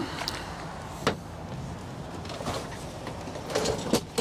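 Steady outdoor noise with a single sharp click about a second in, and a brief faint voice near the end.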